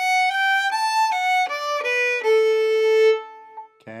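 Fiddle bowing a quick run of single notes from a D-major reel melody, stepping downward and ending on a lower note held for about a second before it fades.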